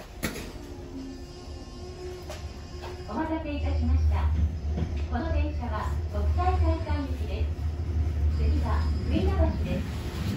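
Kyoto Municipal Subway Karasuma Line 20 series train running, heard from inside the car as a steady low rumble that grows louder about three seconds in. A voice speaks over it from about the same moment.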